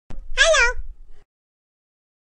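A single cat meow, about half a second long, rising and then falling in pitch, just after a short click.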